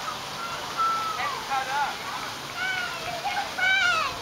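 High-pitched voices calling out in short, wavering bursts over a steady background hiss, with no clear words.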